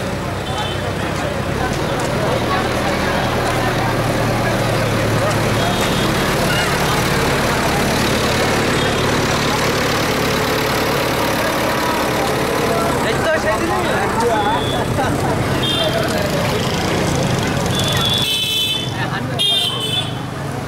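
Street din from a marching crowd: many voices mixed with the low hum of a vehicle engine, with short high-pitched toots near the end.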